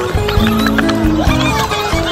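Folk dance music with long held notes, over the repeated clacking of dancers' wooden shoes (klompen) striking pavement.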